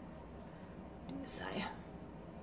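A woman's brief whisper about a second in, lasting about half a second, over a faint steady room hiss.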